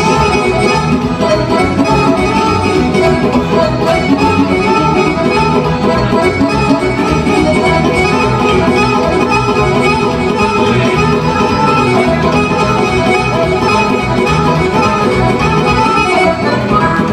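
A live band playing loud instrumental dance music, with an accordion among the lead instruments.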